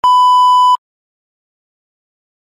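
Colour-bars test-tone beep: one steady 1 kHz tone held for about three-quarters of a second, starting and cutting off abruptly.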